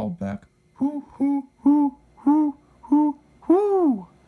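A human voice imitating a great horned owl's hooting call, 'whoo-whoo-who-who-who-whoooo': five short hoots about half a second apart, then a longer drawn-out hoot that rises and falls in pitch near the end.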